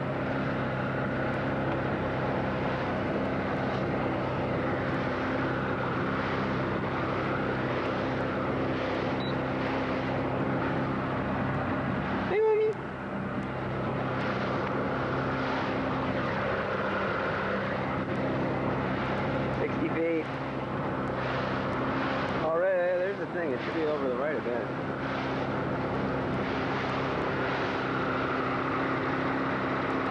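Motorboat engine running steadily while the boat is under way, a constant even hum. A few short wavering sounds break in about twelve, twenty and twenty-three seconds in.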